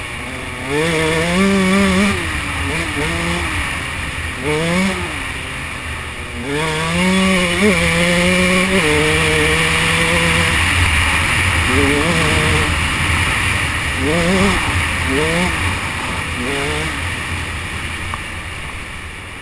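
A 125 cc two-stroke enduro motorcycle engine riding a trail: it revs up and eases off again and again in short bursts, its pitch climbing and dropping with each one and holding steady for a moment in the middle, over a constant rush of noise.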